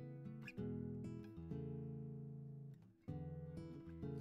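Background acoustic guitar music, plucked notes changing every second or so, with a brief break just before three seconds in.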